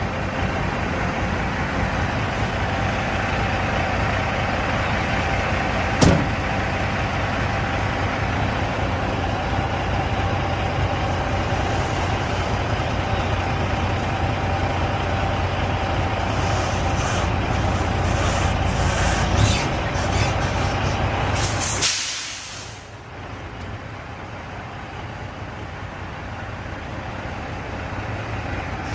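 Semi-truck diesel engine running steadily during a tug test of the fifth-wheel coupling, with only the tractor brake released. A sharp click comes about six seconds in, and a short hiss of air near the end, after which the sound drops in loudness.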